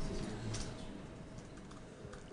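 Typing on a computer keyboard: a short run of quiet keystrokes that thins out toward the end.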